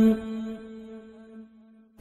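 A man's voice holds one sung note at the end of a phrase of an unaccompanied Pashto naat. The note fades away with echo over about a second and a half, then drops to near silence just before the next line begins.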